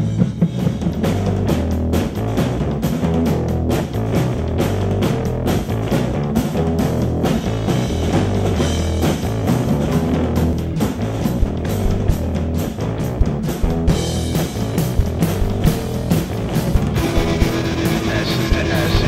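Rock music, with a drum kit keeping a steady beat under guitar.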